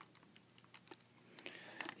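Faint, irregular clicks of keys being tapped, about a dozen over two seconds, as a calculation (an inverse tangent) is keyed in.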